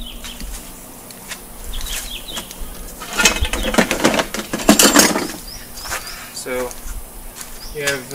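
Rustling and scraping handling noise, loudest for about two seconds a few seconds in, with small birds chirping now and then.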